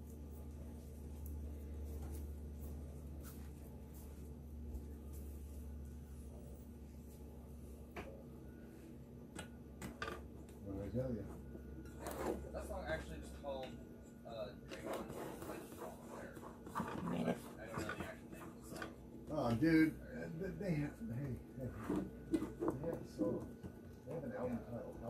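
Faint, indistinct voice in the background over a low steady hum that stops about fourteen seconds in, with a few light knocks.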